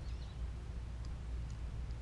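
Quiet outdoor background: a steady low rumble, with a faint high chirp near the start.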